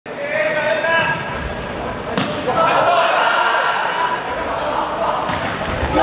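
Volleyball struck by hands during a rally: sharp slaps of the ball, the loudest a little over two seconds in and a few more near the end, echoing in a large sports hall.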